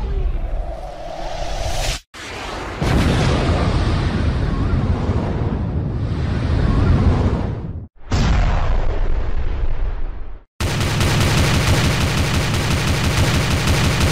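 Stock explosion and gunfire sound effects: a long rumbling blast, then after a short silent gap a second blast, and from about ten seconds in a rapid, evenly spaced burst of automatic gunfire. A brief whooshing intro sound plays at the start.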